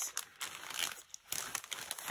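Clear plastic bag crinkling irregularly as the packets inside it are shuffled by hand, with a brief lull about a second in.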